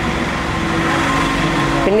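A steady held tone over a low rumble and hiss.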